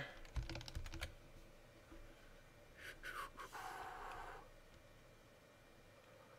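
Faint clicks of a computer mouse and keyboard, a quick run of them in the first second, then a softer brief noise about three seconds in.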